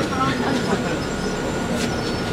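Steady running noise inside a moving city bus: engine and road rumble with a faint steady whine.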